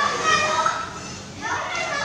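A young child's high-pitched voice, vocalizing playfully without clear words, in two stretches with a short break about a second in.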